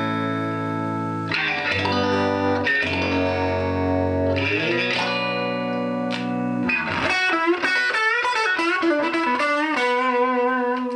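Stratocaster-style electric guitar played clean through a 6V6 push-pull tube amp's built-in 8-inch speaker, with the amp's chime: held chords changing every second or so, then from about seven seconds in a quicker single-note line with bent notes.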